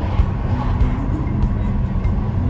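Steady low road and engine rumble of a car driving, heard from inside, with music playing over it.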